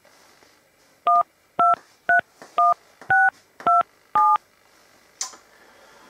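Touch-tone keypad tones of a mobile phone being dialled: seven short two-note beeps at about two a second, each key sounding its own pair of pitches. A brief click follows about a second after the last beep.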